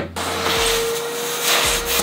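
A vacuum cleaner comes on at the very start and runs steadily with a constant motor whine over a loud airflow hiss, its hose nozzle cleaning out freshly drilled binding screw holes in a ski.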